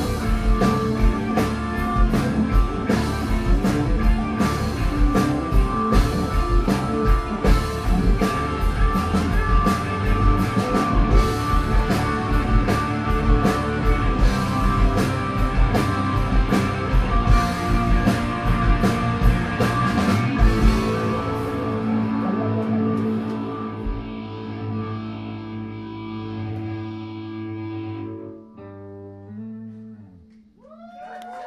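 Live progressive rock band playing with drums and electric guitar over held chords. About two-thirds of the way in the drums stop, and the final chord rings on and fades as the song ends.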